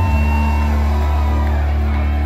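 Live band music with a low bass note held steady throughout and guitar above it.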